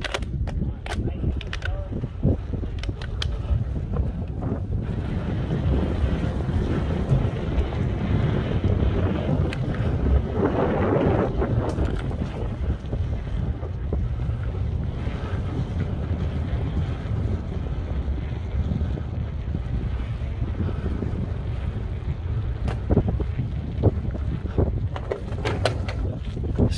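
Wind buffeting a helmet-mounted phone microphone, a steady low rumble that swells about ten seconds in, with scattered knocks of footsteps on the wooden dock boards.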